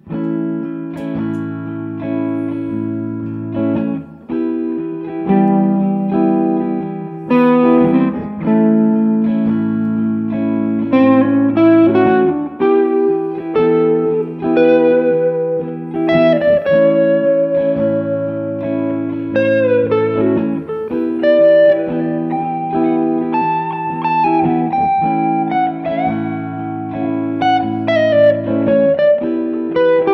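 Electric guitar through an amp: a looped rhythm part of A major and E minor seven chords repeats about every eight seconds, with a single-note A Mixolydian lead played over it that includes bent notes.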